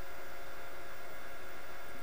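Steady hiss with a faint hum: the recording's background noise between words, with no other sound.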